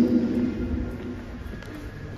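A man's voice over a microphone and loudspeakers dies away in the church's long echo during the first half second, leaving quiet room noise with a faint low rumble.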